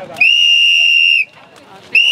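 A whistle blown in one long, loud, steady blast of about a second, then the start of another short blast right at the end.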